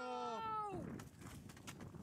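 A boy's long, drawn-out shout of "No!", held on one high pitch, then sliding down and dying away just under a second in.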